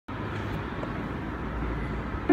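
Steady low background noise with a low rumble, like outdoor urban ambience with distant traffic.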